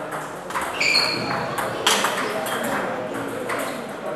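Table tennis ball clicking off paddles and table in a rally, with a short ringing ping about a second in, over a steady murmur of voices and play at other tables echoing in a large hall.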